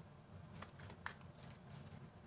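Tarot cards being shuffled by hand: faint papery card noise with two light clicks about a second in.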